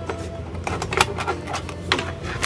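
A hard pencil case being opened: a few sharp clicks and knocks, the loudest about a second in, as its lid is released and swung open.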